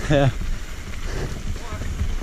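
Enduro mountain bike rolling fast down a loose, rocky dirt trail: a steady rumble of tyres on gravel mixed with wind buffeting the microphone.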